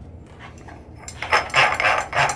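Hands gripping and turning the knurled feed sleeve of a hot tapping tool to bring the shell cutter down: quiet at first, then a series of rough scraping and rubbing sounds from about a second in.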